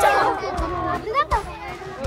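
Many children's voices shouting and chattering together, a crowd reaction that dies away over the two seconds.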